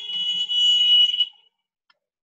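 A loud, steady, high-pitched electronic beep like an alarm buzzer, held for over a second and cutting off about 1.4 s in, followed by a faint click near the end.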